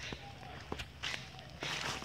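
Footsteps on a dirt forest path covered in dry leaf litter, about four steps.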